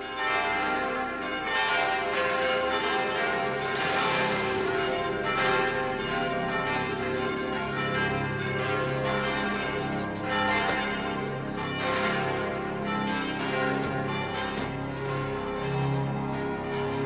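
Church bells pealing, strike after strike overlapping in a continuous ring.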